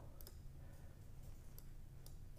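A few faint computer mouse clicks, a quick cluster near the start and one more past halfway, over a low steady hum.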